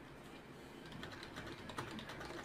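Faint clicking at a computer, a few separate clicks starting about halfway through.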